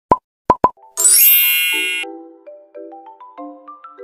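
Intro jingle with sound effects: three quick pops, then a bright shimmering chime, then a short melody of single plucked notes stepping up and down.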